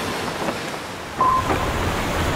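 Wind-like rushing noise from a title-sequence sound effect, fading slowly, with a short high tone a little over a second in.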